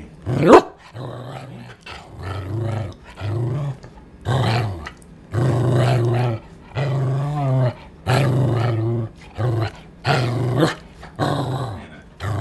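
Shetland sheepdog 'talking': a string of about a dozen short, low, growly vocalizations in speech-like phrases, its attempt at saying 'I love you' in answer to 'Do you love me?'. A sharp rising yelp about half a second in is the loudest sound.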